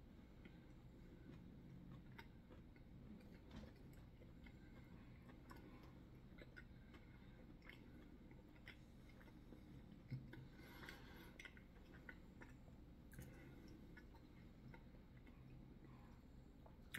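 Near silence with faint, scattered mouth sounds and small clicks of a person quietly chewing and tasting.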